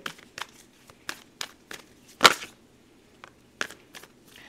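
A deck of tarot cards being handled: a string of short clicks and slaps as cards are split, pulled from the deck and laid on a cloth-covered table, with one louder slap a little past halfway.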